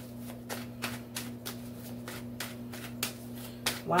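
Tarot deck being shuffled by hand: a quick, irregular run of card taps and slaps, about three to four a second, over a steady low hum.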